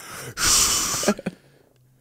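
A person blowing out a puff of breath, a breathy hiss lasting well under a second, starting about half a second in.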